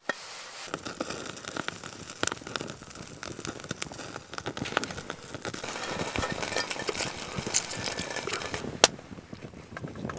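Dense crackling and sizzling from a wood fire burning in a Firebox folding stove and the hot oil in the pan on top of it, getting busier from about halfway through, with one sharp pop near the end.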